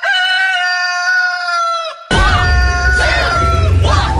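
A long, held call of steady pitch that dips slightly at its end, then about two seconds in a loud backing track with a heavy bass beat starts, with more gliding calls over it.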